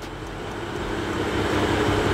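BMW M2's turbocharged straight-six idling, heard from behind at the exhaust: a steady rush with a low hum that grows steadily louder.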